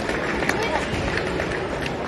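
Crowd chatter and scattered voices in a sports hall, with a few short sharp clicks in between.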